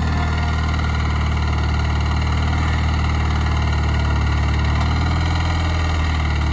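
Ariens GT garden tractor engine running steadily as the tractor pulls a Brinly disc harrow through plowed soil.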